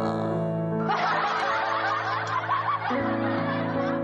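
A woman laughs into a close microphone for about two seconds, starting about a second in, over a sustained keyboard backing track that changes chord near the end.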